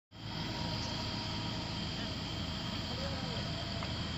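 Night insects, crickets, trilling steadily in a continuous high chorus over a steady low rumble.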